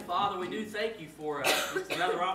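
A single cough, sharp and short, about three-quarters of the way through, among people speaking indistinctly.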